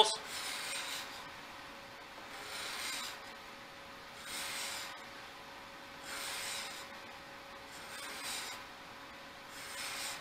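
Steel card scraper shaving a walnut board in six separate hissing strokes, about one every two seconds. Its freshly burnished burr is lifting thin curls of wood rather than dust.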